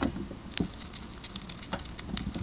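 A gerbil chewing on cardboard: a quick, irregular run of small sharp clicks and crunches.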